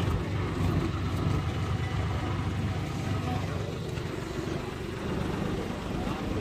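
A car engine idling steadily with a low hum, with faint voices in the background.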